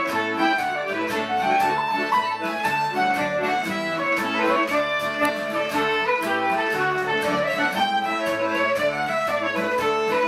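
Folk dance band playing a new quadrille tune together with a steady beat: fiddle, concert flute, strummed acoustic guitar and accordion.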